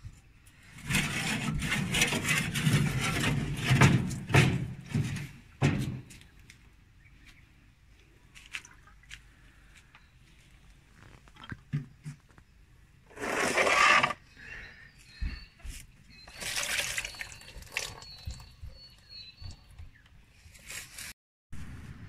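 Leftover coolant sloshing and pouring out of an old car radiator as it is lifted and tipped, in three bursts: a long one of a few seconds near the start and two short ones later.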